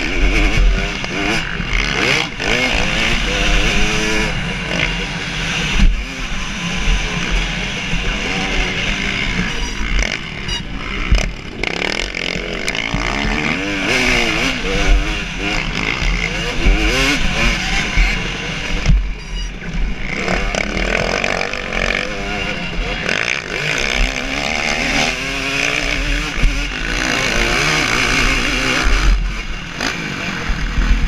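2017 KTM 250 SX two-stroke motocross engine under race load, its revs climbing and dropping over and over as the rider shifts and throttles through jumps and turns.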